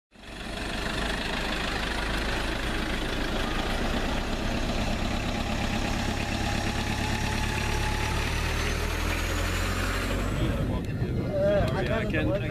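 Pickup trucks, a Toyota and a Mazda among them, driving past in convoy: a steady rumble of engines and tyres on the road. Near the end this gives way to a man's voice.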